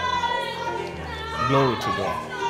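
Keyboard holding soft sustained chords that shift to a new chord about a second in, with a voice rising and falling over it in the second half.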